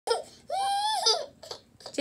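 Toddler crying and whining: a short cry, then a longer high-pitched wail about half a second in that lasts most of a second. He is fussing at the plastic cups strapped on as shoes.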